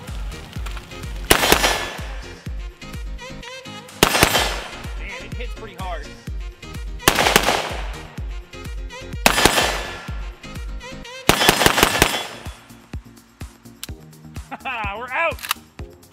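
Polish wz. 88 Tantal rifle in 5.45×39 firing: single shots two to three seconds apart, then a quick string of several shots about eleven seconds in, each shot trailing off in an echo. Background music with a steady bass beat plays under the shots.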